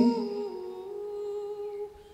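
A sustained hum of a few steady tones. It steps slightly down in pitch just after it starts, holds, and fades out near the end.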